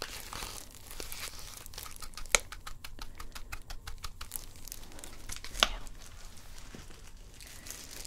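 A tint brush tapping and scraping in a plastic bowl of hair dye as it is mixed, with plastic gloves crinkling. There is a quick run of light clicks from about two and a half to four seconds in, and sharp taps just before and well after it.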